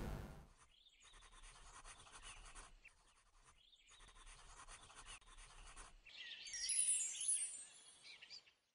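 Faint pencil scratching on paper in two spells of strokes, then a brief, louder burst of high falling chirps near the end.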